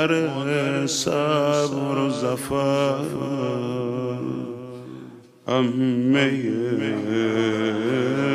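A male voice chanting a Persian mourning lament in long, melismatic phrases with a wavering, ornamented pitch. It breaks off for a breath at about five seconds, then carries on.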